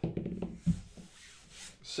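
Hands handling shrink-wrapped card boxes and a die tossed onto a padded table mat: soft rubbing and light knocks, with one sharper knock a little under a second in.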